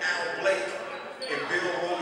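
A basketball bouncing on a gymnasium's hardwood floor, one sharp bounce about half a second in, over the chatter of people's voices in the echoing hall.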